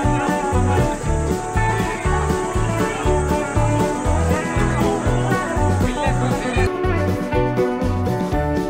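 Background music with a steady bass beat; a high, hissy layer in it drops out near the end.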